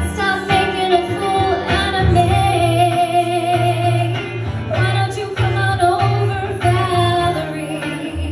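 A woman singing live into a microphone, accompanied by an electric guitar. Her notes run on one after another, with a longer held note from about two to four seconds in.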